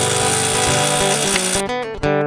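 Acoustic guitar music coming in under a steady hiss of workshop machine noise; the machine noise cuts off about a second and a half in, leaving the guitar clear.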